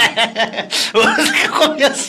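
People chuckling and laughing into studio microphones, mixed with bits of speech.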